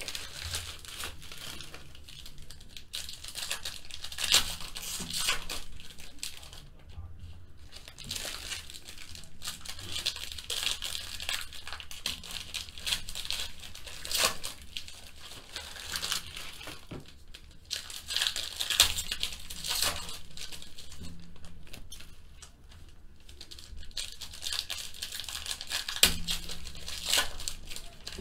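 Foil wrappers of Panini Select Football card packs crinkling and tearing as hands rip them open and peel them apart: a run of sharp crackles with short lulls.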